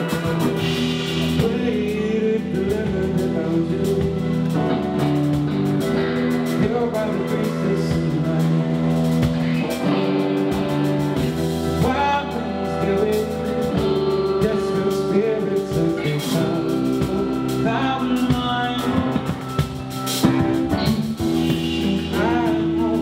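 Live rock band playing: electric guitars and bass over a drum kit, with a male lead vocal singing.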